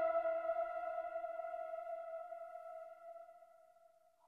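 A single synthesizer note from the backing music, struck just before and left to ring, fading away slowly until it dies out near the end.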